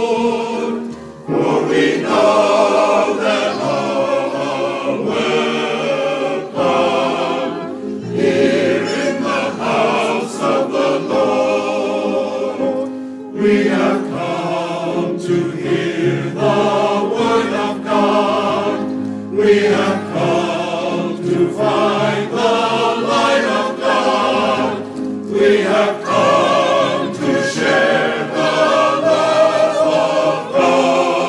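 Mixed church choir of men's and women's voices singing with piano accompaniment, in phrases broken by short pauses.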